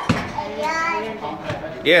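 Children's voices and talk echoing in a training hall, ending with one short, loud shout.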